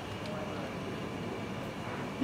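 Steady room noise of a large hall picked up through the lectern microphone, an even hum and hiss with no speech.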